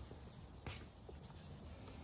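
Faint rubbing of hand-held 1500-grit wet sandpaper on the painted rear bumperette, wet sanding out a scuff in the clear coat, with a single faint tap about two-thirds of a second in.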